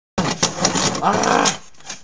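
A moment of dead silence at a cut, then a man's voice making wordless sounds, loudest about a second in.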